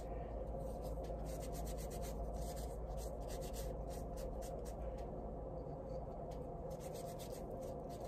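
Damp towel wiping a laser-cut birch plywood cutout to wet the wood before watercolor: faint, continuous rubbing made of many small scuffs.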